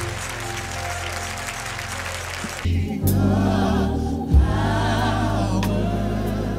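Gospel mass choir singing with a heavy bass line underneath. About two and a half seconds in, the music switches abruptly to a new passage with deeper bass notes and voices singing with strong vibrato, and a sharp knock stands out a little past four seconds.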